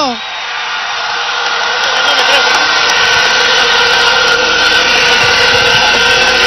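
Large outdoor crowd cheering, swelling over the first two seconds and then holding steady and loud.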